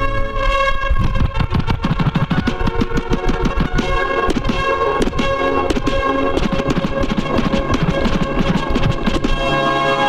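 Turntablist routine on vinyl turntables and a DJ mixer: a sustained pitched sample chopped into fast stutters by scratching and crossfader cuts, settling into a steadier held note near the end.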